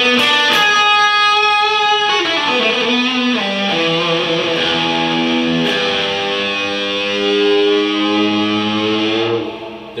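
Electric guitar played through an EarthQuaker Devices effects pedal into an ENGL amp head and Marshall cabinet: long sustained notes, a downward slide about two seconds in, then notes held and left ringing until they fade near the end, with plenty of room reverb.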